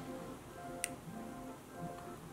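Soft background music with gentle held notes, and a single faint click a little under halfway through.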